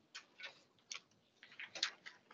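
Faint, irregular ticks and taps, a few spread out and then a quick cluster near the end: footsteps and handled papers as a man walks up to the meeting table.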